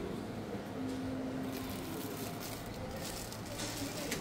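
Faint steady background noise of a supermarket aisle, with a brief faint hum-like tone about a second in.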